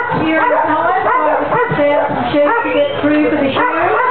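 Kelpie sheepdogs yipping and barking, mixed with people talking.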